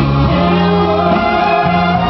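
Live stage musical number: a band with held bass notes accompanies several voices singing long sustained notes, recorded from the audience.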